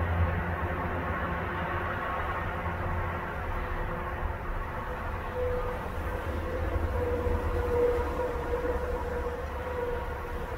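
A steady low background rumble, like distant traffic or machinery, with a faint steady hum coming in about halfway through.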